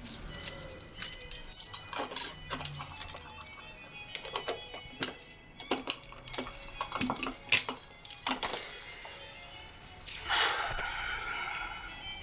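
Metal chain and padlock clinking and rattling as they are handled by hand, in irregular sharp clicks, over soft background music.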